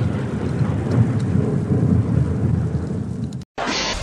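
Low rumbling thunder sound effect that cuts off abruptly about three and a half seconds in, followed by a short burst of static hiss near the end.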